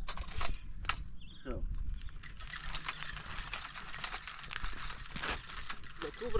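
A child's small bicycle being pushed over stony dirt ground, clicking and rattling in a quick, irregular run of ticks.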